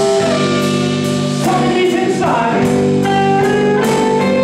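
Live blues band: a man singing over electric guitar, with drums keeping time.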